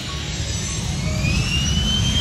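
Cessna Citation Mustang's twin turbofan engines at takeoff power on the takeoff roll: a loud, steady rushing noise with a whine that climbs in pitch as the jet accelerates. Background music plays faintly beneath.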